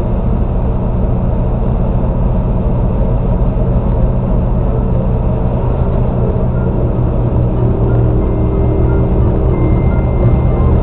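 Steady low rumble of road and tyre noise with the engine, heard inside a car's cabin while cruising at highway speed.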